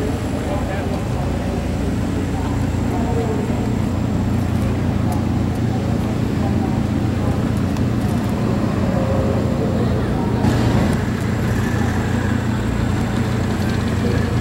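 Indistinct voices of people talking in the background over a steady low mechanical hum.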